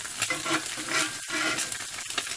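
Eggs sizzling in hot oil in a freshly seasoned cast iron skillet, with a metal spatula scraping along the pan under an egg's edge.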